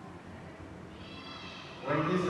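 A girl's voice speaking quietly and haltingly, with a thin, high-pitched drawn-out sound in the second half.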